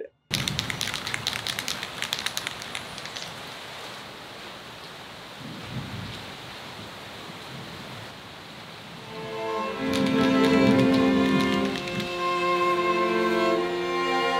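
Steady rain falling, with sharp crackles of drops in the first few seconds and a low swell near the middle. Bowed-string music comes in about nine seconds in and becomes the loudest sound.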